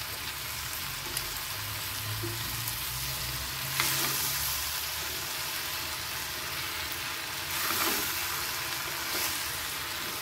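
Cubes of half-ripe mango sizzling in hot coconut oil and spices in a black pan, stirred with a spatula. The stirring strokes make the sizzle swell a few times, about four and eight seconds in.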